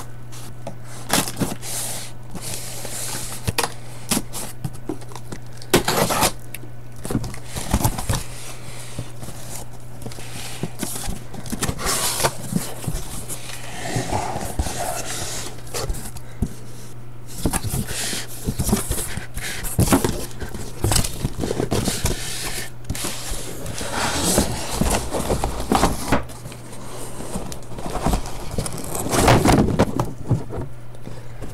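A cardboard shipping case being opened and handled by hand: flaps scraping and crackling, with frequent sharp knocks and rustles of the cardboard boxes inside. A steady low hum runs underneath.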